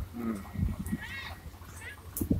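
Indistinct voices of people nearby: a short low voice at the start and a higher, rising-and-falling call about a second in, over a low rumble.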